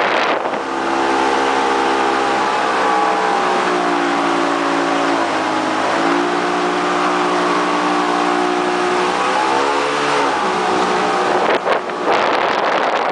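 Riverboat engine running under way upriver, its pitch dipping and climbing again with throttle changes and falling near the end. Wind rush on the microphone is heard at the very start and comes back near the end.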